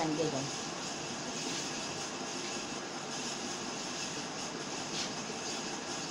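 Steady, even background hiss of room noise, with a brief click about five seconds in.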